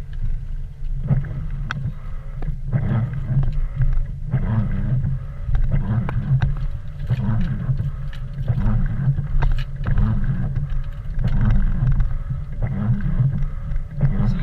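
Car windshield wipers sweeping wet snow off the glass in a steady rhythm, a stroke a little under a second apart, over the low rumble of the car moving slowly.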